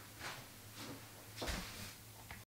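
Faint room tone with a steady low hum and three soft knocks, the loudest about one and a half seconds in.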